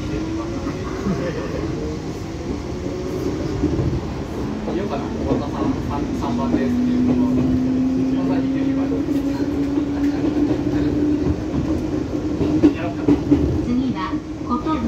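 Fujikyu Railway electric train heard from inside the car while running: a steady rumble of wheels on rail, with a motor whine whose pitch rises slowly as the train gathers speed.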